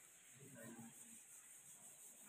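Near silence: room tone, with a faint, brief murmur of a voice about half a second in.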